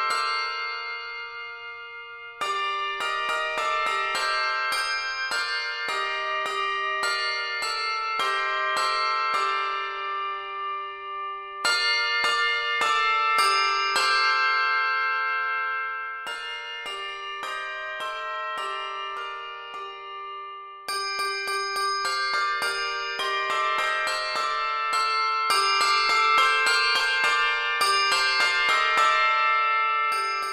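Handbells ringing a lively piece in rhythmic chords. The ringing dies away briefly near the start and comes back about two seconds in, with louder entries near the middle and about two-thirds of the way through.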